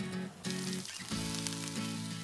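Diced eggplant and cabbage sizzling in a frying pan, the hiss coming in about half a second in, under background music.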